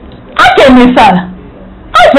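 A woman's voice: one short, loud, animated phrase lasting about a second, its last syllable drawn out on a low note.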